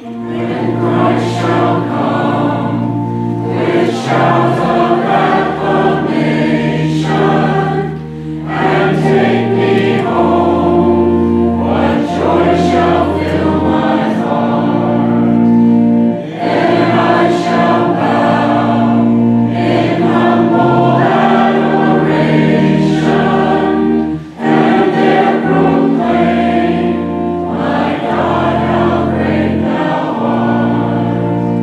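Church choir singing a hymn or anthem in long phrases over organ accompaniment, with its steady held bass notes, and short breaths between phrases.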